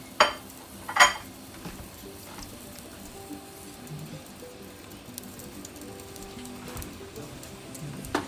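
Diced carrots and potatoes sizzling softly in olive oil in a stainless steel pot. Two sharp clinks come in the first second.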